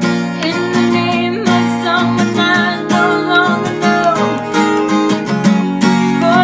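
A woman singing over a strummed acoustic guitar.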